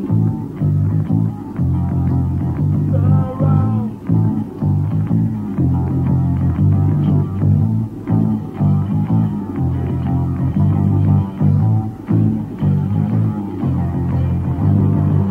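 Live post-punk band playing an instrumental passage led by a repeating, prominent bass guitar line, with guitar and drums, in a dull, lo-fi live recording. A wavering higher line rises over it about three seconds in.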